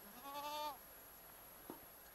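A goat bleating once near the start, a short call of about half a second that dips slightly in pitch at its end. A faint click follows later.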